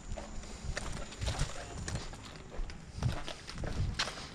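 Uneven footsteps with scuffs and a few knocks and clicks, about five or six dull thumps spread irregularly across the few seconds.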